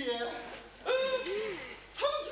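A voice giving a drawn-out, hoot-like 'ooh' about a second in, then a short vocal sound that rises and falls in pitch.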